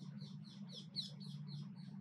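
Bird chirping faintly in a rapid run of short, high, falling notes, several a second, that stops near the end, over a steady low hum.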